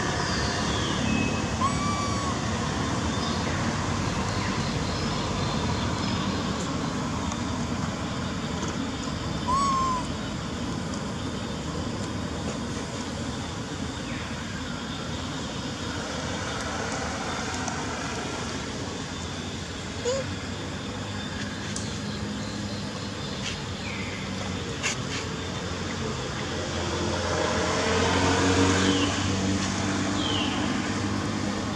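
Steady outdoor traffic noise, with a motor vehicle engine growing louder and passing near the end. A few short high chirps stand out about two seconds in and again near ten seconds.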